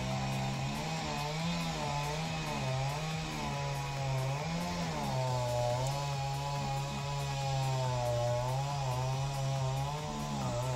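Two-stroke chainsaw running, its engine note wavering up and down as the throttle is worked.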